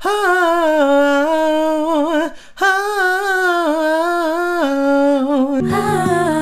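A solo voice sings a wordless vocal run of smoothly held notes and slides, in two phrases with a short break a little over two seconds in. A lower voice comes in just before the end.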